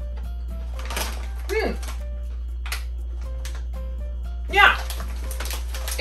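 Background music plays throughout under a few crisp crunches of a corn stick snack being bitten and chewed. There are short vocal sounds about one and a half seconds in and, loudest, just before the five-second mark.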